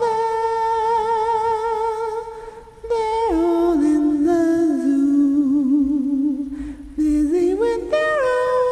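Soft a cappella humming of a slow melody by one voice: a long high note with vibrato, a short breath, then a step down to lower, gently wavering notes, rising again near the end.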